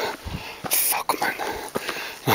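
A man breathing hard and making short, unclear vocal sounds while hiking uphill, with a brief hiss about three-quarters of a second in.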